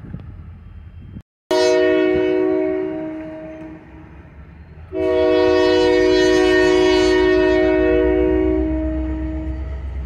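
Diesel locomotive's multi-chime air horn sounding two long blasts: the first comes about a second and a half in and fades out after about two seconds, the second starts about five seconds in and is held for nearly five seconds. A low locomotive engine rumble runs underneath and grows near the end.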